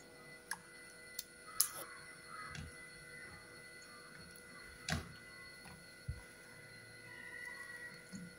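Faint, scattered light clicks and soft taps as fruit pieces are handled and dropped into a small saucepan of milky jelly mixture, the sharpest about five seconds in.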